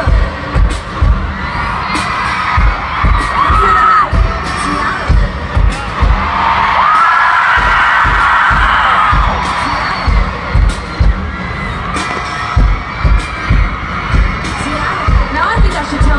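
Live concert music over a stadium PA, recorded from within the crowd: a heavy bass-drum beat of about two thumps a second, with fans screaming and cheering over it. About six seconds in, the beat drops out for a few seconds while the crowd's screaming swells, then the beat comes back.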